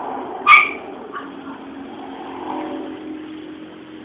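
A dog gives one sharp, short yelp about half a second in and a fainter one a moment later, over a steady low drone.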